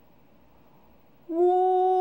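Quiet room tone, then about a second in a voice starts holding a single Mandarin vowel on a steady, level, fairly high pitch: the first (high level) tone in pinyin tone drills.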